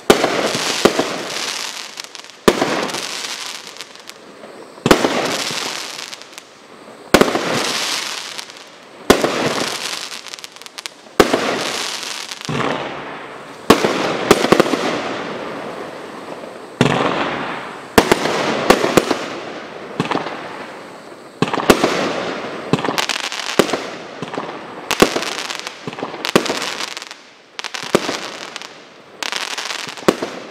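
A Skycrafter Sky Boss 110-shot barrage cake firing its shots in a steady run, a sharp report every second or two, each bang trailing off over a second or so.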